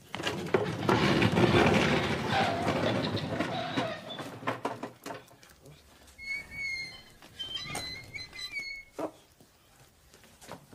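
Wooden furniture dragged and shoved across the floor: a few seconds of rough scraping with knocks, then quieter bumps and a few short high squeaks.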